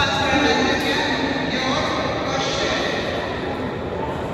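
An announcer speaking into a microphone over the loudspeakers of an echoing indoor swimming hall, over a steady background hubbub.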